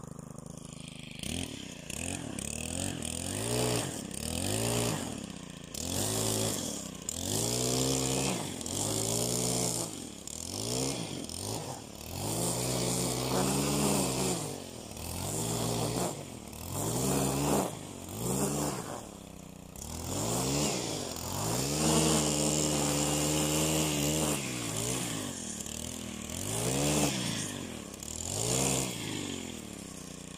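Gas string trimmer engine revving up and down over and over as it cuts grass, each rise and fall of pitch lasting one to two seconds, after a short stretch of low running at the start.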